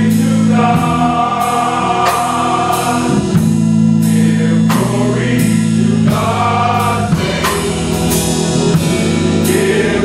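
Male gospel vocal group singing in harmony, holding sustained chords that shift every second or two, over a steady beat of sharp hits a little more than once a second.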